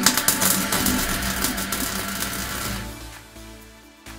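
MIG welding arc crackling and sizzling as a tack weld is laid on a steel drive shaft's shrink-fitted sleeve joint; the crackle stops about two and a half seconds in. Background music runs underneath.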